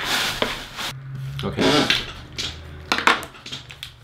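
Cardboard shipping box being opened by hand: a noisy tear of about a second, as of packing tape pulled away, then a few short scrapes and knocks of the cardboard.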